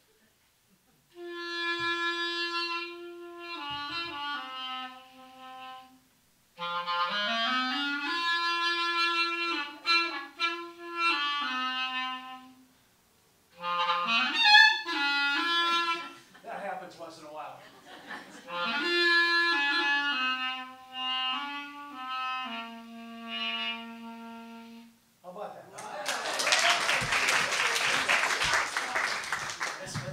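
A clarinet played solo: a short, slow melody of held notes in three phrases with brief pauses between, one phrase opening with an upward slide. Audience applause breaks out near the end.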